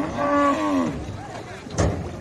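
Cattle lowing: one drawn-out call that wavers in pitch and stops just under a second in, followed near the end by a single sharp knock.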